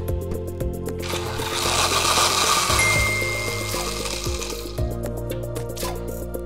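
Background music under a comedic machine sound effect: a broad hissing, blender-like noise swells about a second in and fades out near the end, with a brief high steady tone in the middle, as the rehydrator gadget runs.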